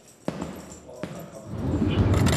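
Two punches landing on a heavy punching bag, two dull thuds about three-quarters of a second apart. Near the end, the low rumble of a car's road noise comes in.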